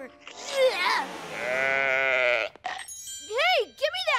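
A cartoon sheep's long, wavering "baa" bleat, followed near the end by a short startled cry from a boy.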